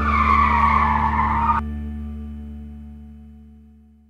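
Edited-in tyre-skid sound effect: a noisy, falling squeal about a second and a half long that cuts off suddenly. It plays over the last held chord of the background music, which then fades away.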